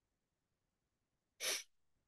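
A short, sharp breath into the microphone about one and a half seconds in, in a pause between sentences; otherwise near silence.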